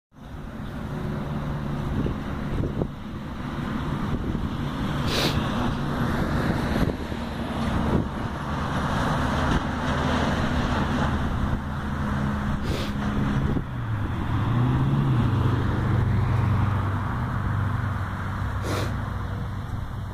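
A motor vehicle engine running steadily with road noise, its pitch dipping and rising briefly about two-thirds of the way through, with a few sharp clicks.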